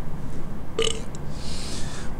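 A man's short throaty burp just under a second in, followed by a drawn-out breathy exhale.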